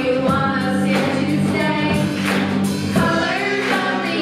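Live band music: several girls singing together, backed by electric guitar, bass guitar, keyboard and drums with cymbal hits recurring through the bar.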